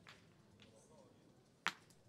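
Steel pétanque boule striking the target boule with one sharp click near the end: a clean hit in precision shooting.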